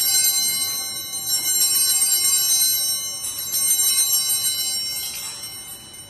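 Hand-held altar bells (Sanctus bells) rung in repeated shakes, each shake about a second and a half after the last, ringing high and bright and dying away near the end. These are the bells rung at the elevation of the chalice during the consecration at Mass.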